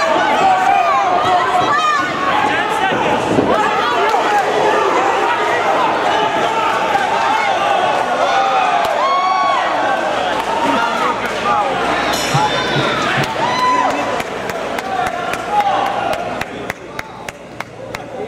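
Fight crowd shouting and cheering, many voices yelling over one another at a fight stoppage. The noise dies down near the end, with a few sharp clicks.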